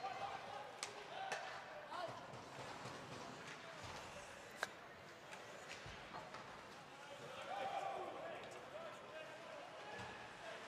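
Faint ice hockey play sounds in a large, mostly empty rink: scattered sharp clacks of sticks and puck, the loudest a little past the middle, with distant voices calling out on the ice.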